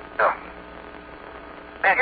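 Steady hum and hiss of the Apollo 16 radio link, band-limited like a radio channel. A short word in a man's voice comes through it just after the start, and another begins near the end.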